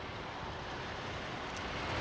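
Steady outdoor background noise with wind on the microphone, a low rumble and hiss with no distinct events, growing a little louder near the end.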